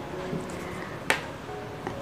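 One sharp tap of a marker tip on a whiteboard a little after a second in, over faint room tone.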